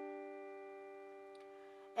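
Piano playing a two-note chord, D and G together, held and slowly fading away.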